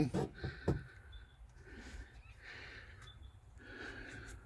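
Quiet pause with a person's soft breathing close to the microphone: two faint breaths, about two seconds in and near the end, after a couple of light clicks in the first second.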